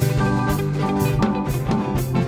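Dance band music: a drum kit keeps a steady beat of about two hits a second under a bass guitar line and guitar.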